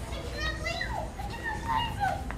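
Children's voices in the background, high-pitched and indistinct, over a steady low rumble.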